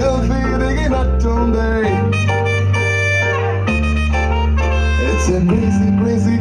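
Loud music with a steady bass line that shifts notes every second or two and a bright melody over it, with one long held note in the middle.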